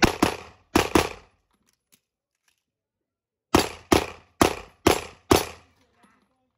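Pistol fire from a practical shooting stage. There are two quick pairs of shots in the first second, then after a pause of about two and a half seconds, five shots about half a second apart.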